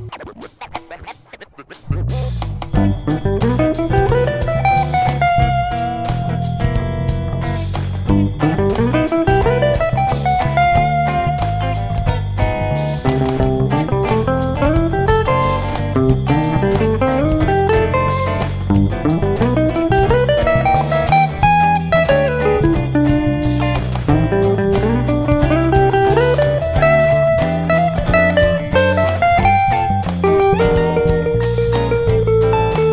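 Archtop electric guitar playing a single-note blues solo in G over a bass and drum backing, starting about two seconds in. The solo keeps returning to one short rising phrase and varies it, developing a single idea through the chorus.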